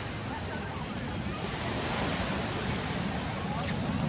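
Small waves breaking and washing up on a sandy beach in a steady surf, with a slight swell about halfway through.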